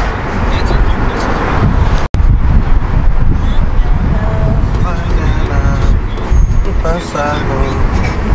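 Car cabin noise while driving slowly through a parking garage: a steady low rumble of engine and tyres, with a momentary gap in the sound about two seconds in.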